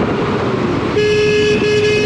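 Road traffic noise heard from a moving motorcycle, then a vehicle horn sounding one steady note from about a second in, broken briefly partway through.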